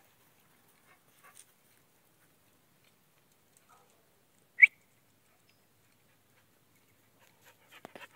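A single short, high-pitched dog yelp about halfway through, most likely from the young puppy at play; little else is heard.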